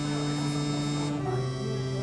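Live band playing an instrumental passage: sustained keyboard chords that change to a new chord a little over a second in.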